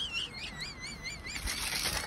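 A faint, high warbling whistle-like tone, its pitch wavering up and down about five times a second, steadier near the end.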